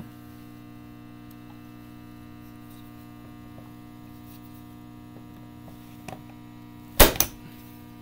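Steady electrical mains hum throughout. About seven seconds in, a spring-loaded punch-down tool fires once with a sharp, loud snap and a smaller click just after, seating a telephone wire into the patch panel's terminal and trimming the excess.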